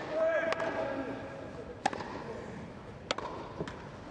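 Tennis ball struck by rackets in a rally on a grass court: a serve and the shots after it, three sharp pops about a second and a quarter apart. A fainter tick comes shortly after the last hit.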